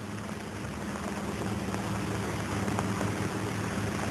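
Steady electrical hum over a hiss, slowly growing louder: the cyclotron's high-frequency oscillator installation powering up.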